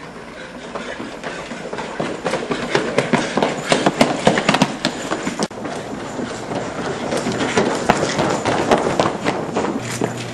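Several people running on a hard hallway floor: a fast, uneven clatter of footsteps that builds louder toward the middle and drops out briefly about halfway through.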